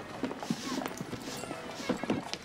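Horse's hooves clip-clopping on a hard road, uneven strikes about two a second, from a horse-drawn carriage.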